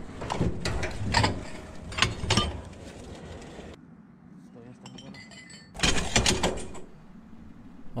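Ceramic dishes and broken shards clinking and clattering as they are picked up and shifted by hand. There are several clinks and knocks in the first few seconds, a quieter stretch after that, and a denser burst of clatter about six seconds in.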